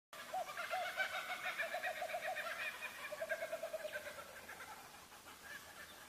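Birds calling: two runs of quick, low, repeated notes, about five a second, with higher chirping over them. The calls fade away over the last two seconds.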